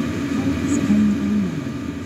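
Chinese diesel air heater running: a steady hum from its burner and blower. A short pitched sound, like a voice, comes in about a second in.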